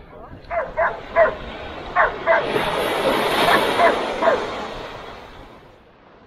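Small dog barking repeatedly in short yaps, about ten over four seconds, over a rush of noise that swells in the middle and fades away near the end.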